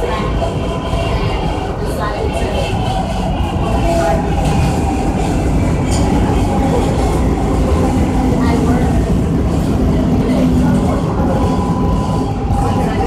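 Interior of a moving R143 subway car: a loud, steady rumble of the wheels on the track and the car body, with faint steady whining tones above it.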